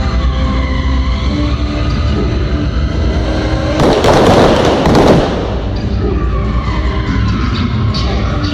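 Music over the arena PA with cars' engines running and tyres squealing as they slide on the slick floor. About four seconds in, a loud burst of noise lasts about a second, along with a bright flash among the cars.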